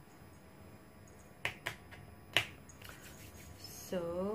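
A few sharp clicks from a small eyeshadow pot being handled: two close together about a second and a half in, then a louder one just after the middle.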